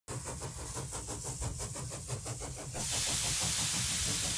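A steam engine running with a quick, even beat. From nearly three seconds in, a loud steady hiss of escaping steam takes over.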